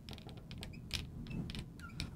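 Marker squeaking on a glass lightboard in a run of short, faint strokes as lines are drawn.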